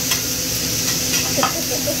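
Steak searing on a steel hibachi griddle: a steady sizzle, with a few faint clicks.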